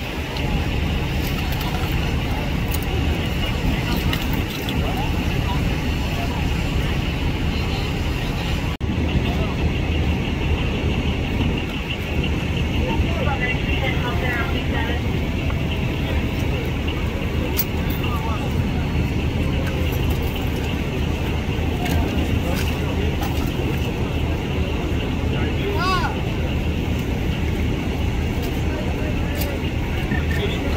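Engines running steadily under a crash rescue, with rescuers' voices talking in the background.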